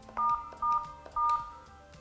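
Polycom desk phone keypad tones: the star key pressed three times, giving three short steady dual-tone beeps about half a second apart. Star pressed three times is the code that parks the active call.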